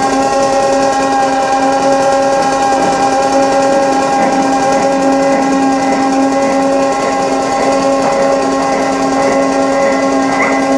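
Live electronic noise music: a loud, steady drone of several held tones over a fast, grainy rattling texture.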